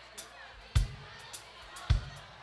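A live drum kit starting a steady beat over audience chatter: a bass drum hit about a second apart, alternating with lighter, sharp snare strokes.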